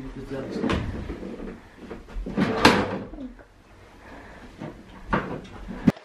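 Knocks, scrapes and creaks of wooden bedroom furniture being handled, with a louder scrape or creak a little over two seconds in and sharp knocks near the end.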